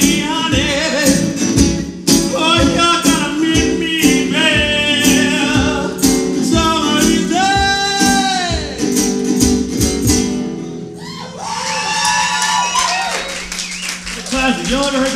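Resonator guitar strummed fast and hard under a man's singing in a live folk-punk song. The strumming stops about eleven seconds in while the singing carries on.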